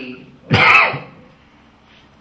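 A single short, loud cough about half a second in, followed by quiet.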